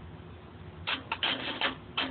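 Metal chain of a chain fall hoist clattering in short, irregular bursts, starting about a second in.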